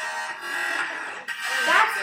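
A looped music piece made on an app, played back through a small speaker, with several steady sustained tones layered together and voices over it.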